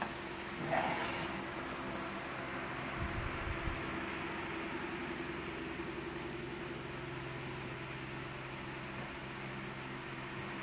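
Steady low hum and hiss of a room, with a short faint rising sound about a second in and a few soft low bumps about three seconds in.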